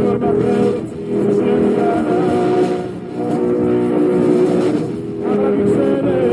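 Rock band music: sustained, held chords with the loudness swelling and dipping about every two seconds.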